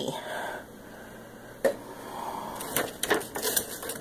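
Paper and cardboard being handled as items are taken out of a cardboard subscription box: soft rustling, one sharp click about one and a half seconds in, and a few quick knocks and rustles near the end.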